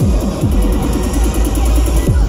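Loud dubstep playing over a festival sound system: heavy bass with a rapid run of falling-pitch bass hits, several a second.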